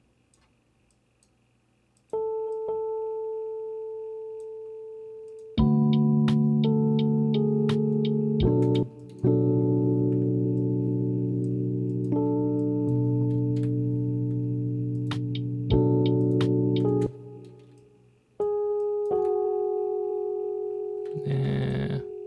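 A lo-fi electric piano software instrument playing a slow melody over held chords. A single held note enters about two seconds in. Full chords follow and change every few seconds, each fading slowly until the next is struck.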